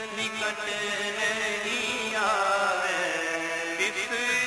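Sikh shabad kirtan: male voices sing a long, wavering melodic line over a steady harmonium, with a few tabla strokes near the start and near the end.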